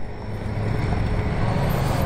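Motor scooter approaching. Its engine and road noise make a low, steady rumble that grows gradually louder as it nears.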